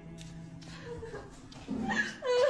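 Quick footsteps on a hard floor as a young woman hurries in, then near the end she breaks into sobbing.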